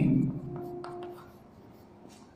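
Chalk writing on a blackboard: faint scratching with a few light taps as letters are chalked.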